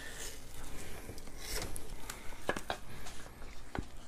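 A kitchen knife scraping and sliding over a raw fish fillet on a plastic cutting board, with soft rubbing and a few light clicks and taps of the blade.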